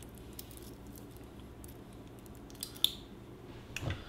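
Stainless steel watch bracelet rattling faintly as the watch is put on the wrist, with two sharp metallic clicks about three seconds in and another just before the end, as the clasp is closed.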